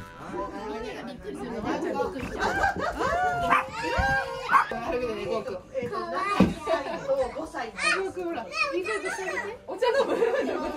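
Excited chatter of young children and adults talking over one another, with a couple of sharp bumps in the middle.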